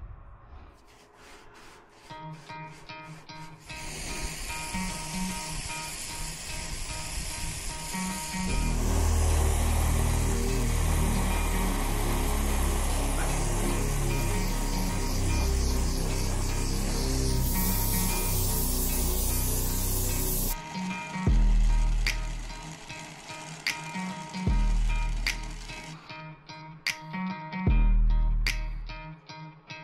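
Background music over the steady hiss and roar of a brazing torch heating the copper refrigerant line joints of a replacement evaporator coil, loudest from about 8 to 20 seconds in.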